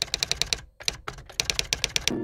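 Computer keyboard typing sound effect: rapid key clicks, about ten a second, in quick runs broken by short pauses near the middle.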